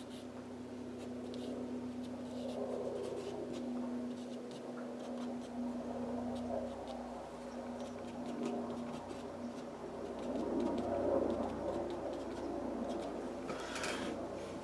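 Faint scratching and rubbing on smooth hot-pressed watercolour paper as wet paint is scraped out with a small scraper and worked by hand, over a low steady hum that fades out about nine seconds in.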